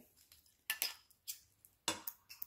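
A few faint, sharp clinks of jewelry being handled, small metal and shell pieces tapping together, about four in two seconds with the loudest near the end.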